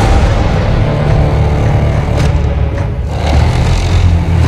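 Film soundtrack: a sudden, loud, deep rumbling boom that starts abruptly, heavy in the bass with a noisy roar over it, held steady.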